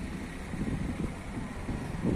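Outdoor street background noise: a steady low rumble of passing traffic, with some wind buffeting the microphone.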